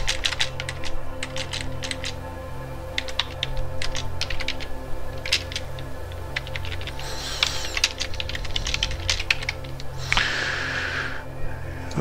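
Typing on a computer keyboard: irregular runs of keystroke clicks, in short clusters with brief pauses between them.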